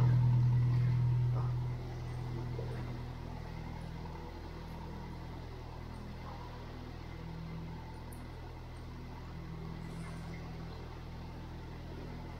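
A narrowboat's diesel engine running steadily, a low hum inside a brick tunnel; about two seconds in it drops noticeably in level and then carries on evenly.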